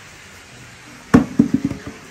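A large pink dice thrown onto dirt and grass lands with a thump about a second in, then tumbles with several quick, lighter knocks before settling.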